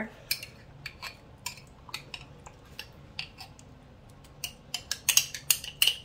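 Metal spoon clicking and clinking against a glass canning jar while black beans are scooped out into a slow cooker. A few light clicks at first, then a quick run of clinks near the end.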